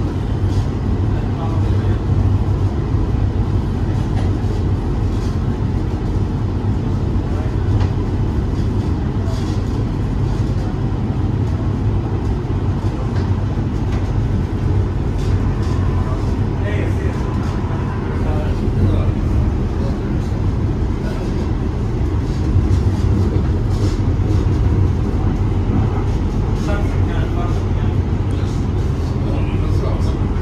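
Cabin noise inside an LA Metro E Line light rail car running between stations: a steady low rumble of the moving train on its rails. Faint voices come through at times.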